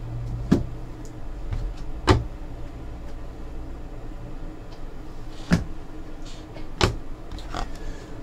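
Four sharp clicks or taps, spread a second or more apart, from handling things at a desk, over a low hum that fades after about two seconds.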